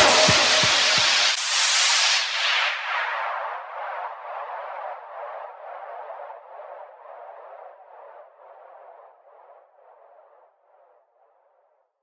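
Closing bars of a neurofunk drum & bass remix: the full mix with drums and deep bass cuts out about a second in. It leaves a thin, bass-less echoing tail, about two pulses a second, that fades away to nothing near the end.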